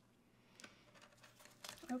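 Faint rustle and scratching of a craft knife cutting through loose canvas fabric along the edge of a soft-wood frame, a few short scrapes mostly in the second half.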